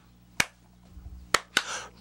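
Two sharp finger snaps about a second apart, keeping time in a short pause between sung lines of a gospel song.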